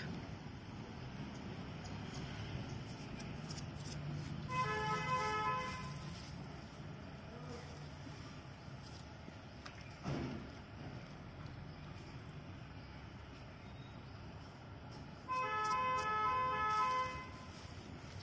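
A vehicle horn sounds twice, a few seconds in and again near the end, each time as a quick run of short toots, over a steady low background hum.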